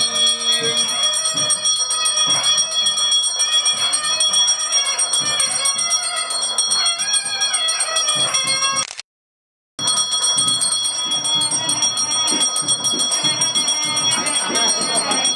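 Temple bells ringing continuously through an aarti, with singing over them. The sound cuts out completely for under a second about nine seconds in.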